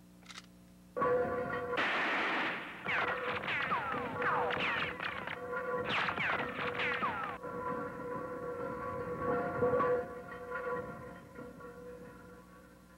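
A volley of rifle fire sound effects with many short descending whistles of the flying shots, over a held orchestral chord. The shooting starts about a second in and stops about seven seconds in, leaving the chord to fade.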